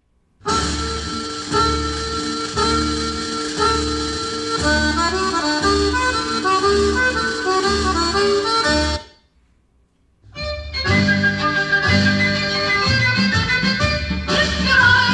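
Recorded music played through a pair of vintage KLH Model 23 speakers and picked up by a room microphone, with a bass beat about once a second. It breaks off about nine seconds in, and after a second of silence a second passage of music starts.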